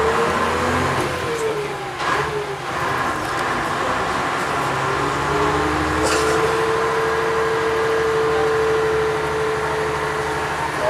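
Vintage single-deck bus's diesel engine pulling under way, heard from inside the saloon. The engine note rises, drops away about two seconds in as at a gear change, then climbs again and holds steady.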